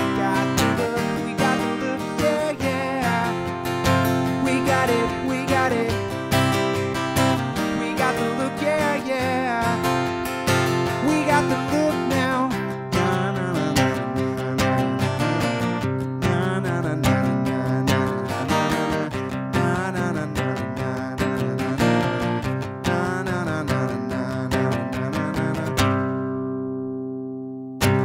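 Acoustic guitar strummed steadily through the instrumental close of a song. About two seconds before the end the last chord is left to ring and fade out, and then comes one brief sharp knock.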